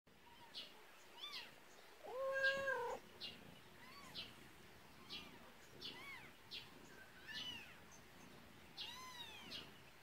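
Young kittens mewing repeatedly in short, high-pitched cries, with one longer, louder and lower call about two seconds in.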